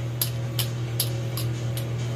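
A steady low electrical hum with a sharp tick repeating evenly, a little over twice a second, from a running machine.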